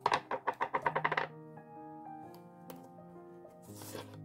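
Double-sided tape pulled off its roll in a quick run of crackling ticks, about eight a second, for just over a second. Soft background music plays throughout, and there is a brief rustle near the end.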